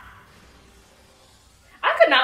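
Faint background sound, then a woman's voice breaks in loudly near the end as she starts an exclamation.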